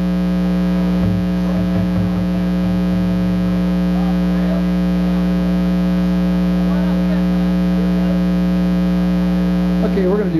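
Loud, steady electrical hum: a low buzz with a stack of overtones that holds unchanged throughout.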